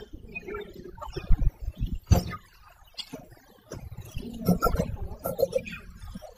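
Birds calling, with low cooing, over irregular low rumbling thumps. A sharp click about two seconds in.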